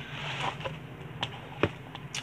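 Gloved hands digging through moist compost in a disposable aluminium foil pan: soft rustling of the soil, with two sharp clicks from the foil pan in the second half.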